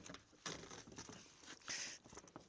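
Faint scrapes and rustles of gloved hands and a tool working at the base of a metal roller garage door, with a short scrape about half a second in and a sharper one near the end.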